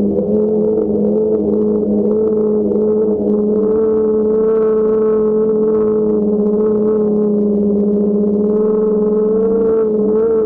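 DJI Phantom quadcopter's motors and propellers humming steadily, picked up by the GoPro camera mounted on it: a loud, even drone with a slight waver in pitch.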